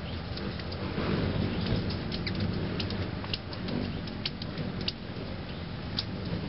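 Hummingbird giving short, sharp, high chip notes, scattered and most frequent in the middle few seconds, over a steady low background rumble.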